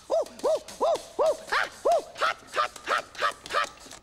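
A puppet rat's voice yelping in pain about ten times in quick succession, roughly three a second, each cry rising and falling in pitch, as he is burned sitting on a hot goose roasting over an open fire.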